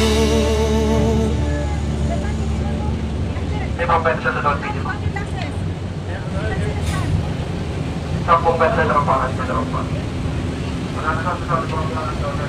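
Steady low drone of a passenger car ferry's engines under way, with short spells of people talking over it.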